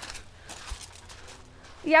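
Light rain, down to a sprinkle, falling as a faint even hiss, with one brief low bump about a third of the way in.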